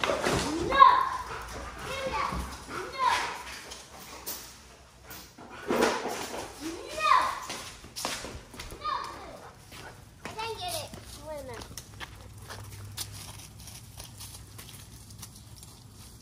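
Children's voices calling out and chattering a short way off, a few seconds apart, growing fainter toward the end.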